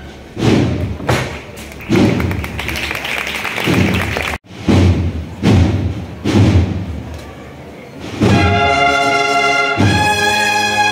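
Cornet-and-drum procession band playing a slow march: heavy drum strikes with a deep thud roughly once a second. About eight seconds in, the cornets come in with a loud sustained chord.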